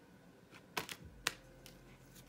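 Oracle cards being handled and set down on a table: a few light clicks and taps, the two sharpest a little under and a little over a second in.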